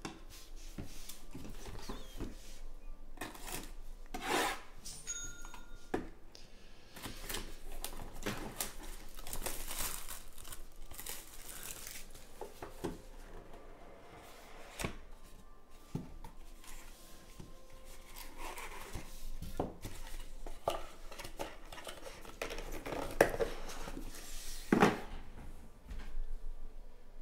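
Hands handling and opening a cardboard trading-card box: irregular rubbing, sliding and rustling of cardboard and plastic card holders, with scattered light clicks and a couple of sharper knocks near the end.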